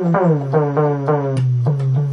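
Korg MS-10 monophonic analog synthesizer sounding a held low, buzzy note whose tone sweeps downward over and over, several times a second. A few short clicks sound in the second half.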